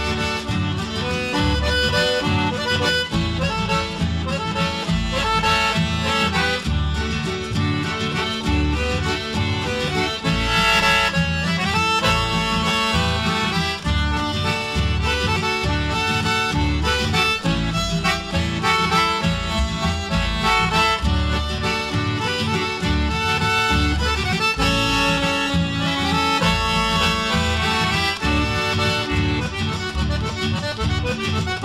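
Instrumental chamamé led by accordion with guitar accompaniment, playing continuously with no singing.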